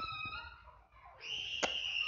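Children shouting outside: two high-pitched calls, the second held steady for about a second. A single keyboard click is heard about halfway through.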